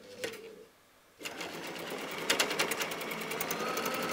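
W6 sewing machine starting up about a second in and stitching fast, with rapid, even needle strokes, during ruler quilting. It sounds terrible: its thread is jamming and tangling into a snarl under the quilt.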